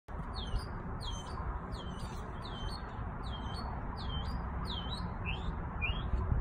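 A backyard songbird singing a run of about nine clear whistled notes, roughly one and a half a second; most slide down and hook back up, and the last two slide upward instead. A steady low rumbling noise lies underneath.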